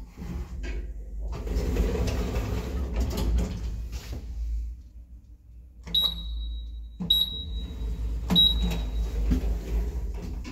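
TKE e-Flex elevator car operating panel beeping three times as floor buttons are pressed, each press a click with a short high beep, over the car's steady low hum. Before the beeps there are a few seconds of rushing noise.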